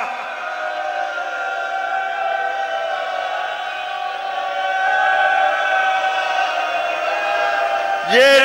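Many voices chanting together in long, slowly wavering held notes, quieter than the amplified orator.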